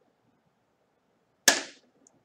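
A tossed penny landing on the tabletop about a second and a half in: one sharp clink with a brief ring.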